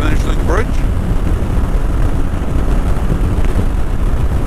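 Motorcycle at highway speed: heavy wind rush and buffeting on the microphone over the engine and road noise. A short snatch of a voice comes in about half a second in.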